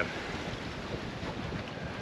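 Steady rush of gusting wind on the microphone together with choppy sea water washing along the hull of a catamaran under sail, engines off.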